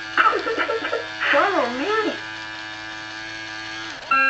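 A Fisher-Price Magic Touch Crawl Winnie the Pooh toy plays an electronic sound through its small speaker. For about two seconds there is a wavering, warbling voice-like sound, then a single steady tone is held and cuts off at the end, over a constant low buzz.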